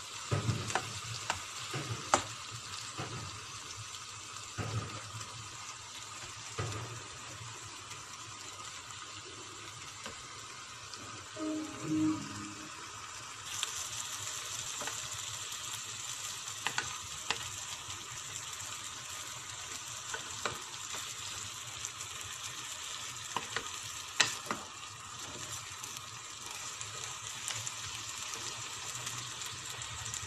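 Ground meat with diced carrot, tomato and onion sizzling in a nonstick frying pan. A wooden spatula stirs it and knocks against the pan now and then. The sizzle gets louder and brighter about halfway through.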